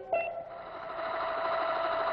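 Small battery-powered toy motor of a Ding-a-Ling robot whirring steadily, growing louder from about half a second in.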